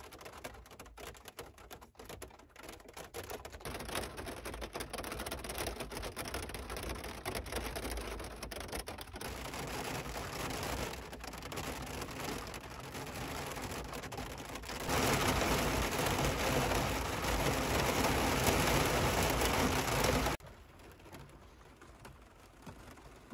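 Rain on a Jeep Wrangler, heard from inside the cabin. It begins as scattered drops ticking on the glass and body, thickens into a steady patter, and turns into a much louder downpour for about five seconds before dropping back suddenly near the end.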